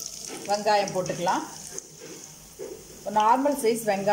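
Chopped small red onions sizzling in hot oil in a nonstick wok, frying with bay leaves. The sizzle is a steady hiss, with a voice talking over it in two short stretches.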